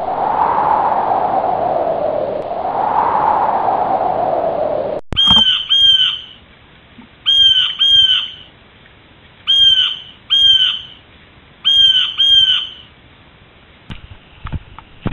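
Steady drone of a small plane's cabin, engine and wind noise, that cuts off sharply about five seconds in. Then a bird calls in pairs of short clear notes, four pairs about two seconds apart.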